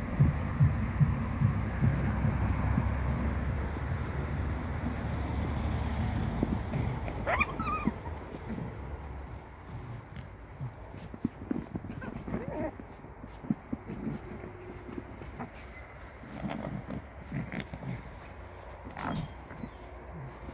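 Two silver foxes, a kit and an adult, play-fighting: low rough vocal sound for the first several seconds, a single high squeal about seven seconds in, then a quieter stretch of short calls and scuffles.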